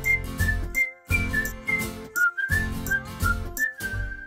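Theme jingle: a whistled melody over a drumbeat and bass, played in short phrases with brief breaks between them and ending on a held note.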